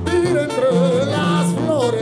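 Mexican brass banda playing live: a lead melody with wide vibrato over a stepping tuba bass line.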